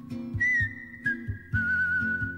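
A whistled melody over a plucked guitar and bass accompaniment: the whistle leaps up to a high note about half a second in, then steps down twice, while the low plucked notes keep a steady beat of about two a second.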